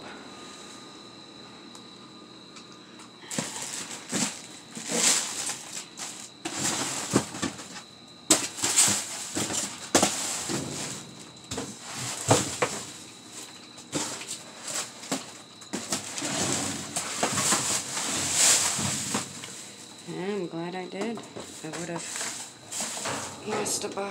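Rummaging through dumpster rubbish: cardboard boxes being shifted and plastic wrap crinkling and rustling in irregular bursts, starting about three seconds in.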